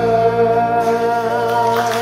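A live band and singer hold the final note of a song, with a low bass note sustained beneath it. Audience applause breaks in near the end.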